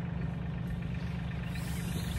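Tractor engine idling steadily: a low, even hum.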